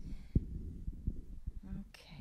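Handling noise on a stage microphone: low thumps and rumble, with one sharper knock about a third of a second in and a few softer ones after.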